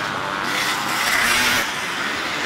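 Enduro motorcycle engines running as dirt bikes ride slowly past through a muddy section, one close by and another approaching.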